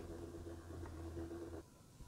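Faint steady hum of a small motorized display turntable spinning, cutting off abruptly about one and a half seconds in.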